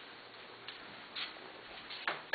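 Faint footsteps on a tile floor: a few soft ticks over quiet room noise.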